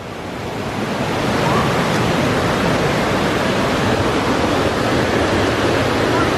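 Steady rushing of a mountain river: an even, wide hiss of water that swells over the first second or so and then holds.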